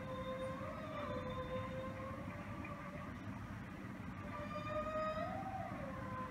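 A solo voice singing a cappella, holding long high notes, with short upward steps in pitch about a second in and again near the end.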